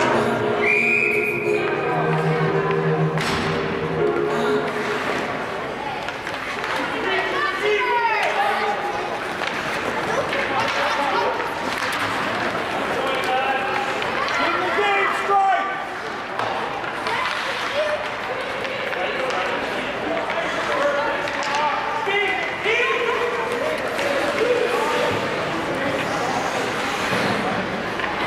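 Ice hockey rink ambience during play: spectators' voices and calls echoing in the arena, with PA music that stops about four seconds in. Occasional thuds of puck and sticks.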